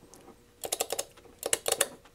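HP 355A attenuator's cam-operated switch mechanism clicking as its shaft is turned step by step. There are two quick runs of about five clicks each, starting about half a second in.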